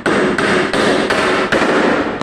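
Hammer blows on the foot of a timber shuttering brace, nailing it down: about five quick strikes, two to three a second, each with a short ring.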